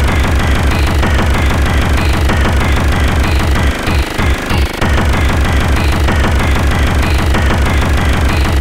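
Speedcore electronic track: a very fast, pounding kick drum under a dense wash of electronic noise and synth. The kick pattern stutters and breaks off briefly about four seconds in, then resumes.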